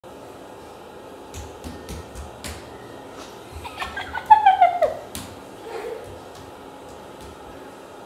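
A toddler's high-pitched squeal, falling in pitch, about four seconds in. Light slaps of small hands and feet on a tile floor come before and after it.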